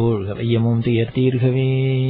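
A man's voice chanting a devotional Sanskrit verse on long, level held notes, with a few short breaks in the first half before one long held note.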